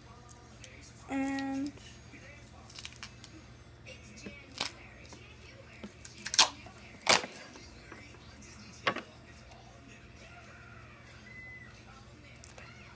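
Duct tape being picked loose and peeled from the roll: a few sharp, separate snaps and crackles as the adhesive lets go, spread over several seconds.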